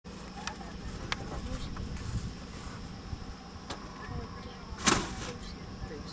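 Small vintage Massey-Harris tractor engine running steadily at low speed while pulling a plow. Several sharp clicks, and one louder knock near the end.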